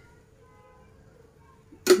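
A quiet stretch with a faint steady hum, then near the end a sharp clink of a metal spoon against an aluminium pan, with a woman's voice starting right after.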